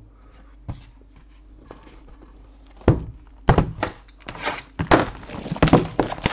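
Trading cards, plastic card holders and box packaging being handled: a small click near the start, then from about three seconds in a quick run of sharp plastic clicks, taps and knocks with some rustling.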